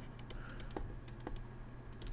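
A string of faint, irregular ticks and taps from a stylus on a tablet as a word is handwritten.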